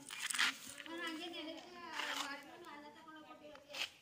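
Speech only: a voice talking quietly.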